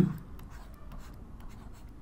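Handwriting: a pen scratching and tapping in many short, faint strokes as letters are written.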